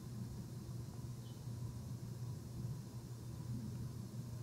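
Faint room tone: a steady low hum under light hiss.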